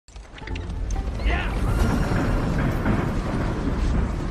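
Cartoon soundtrack of a horse-drawn covered wagon rolling over a dirt street: a steady low rumble, mixed with music and a brief voice-like sound.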